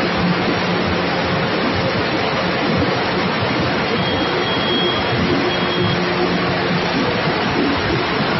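Grain cleaning machine with its bucket elevator and blower running: a steady loud rushing noise with a low motor hum underneath.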